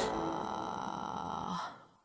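The last held sound of the closing music: a quiet, steady wash that fades out a little before the end.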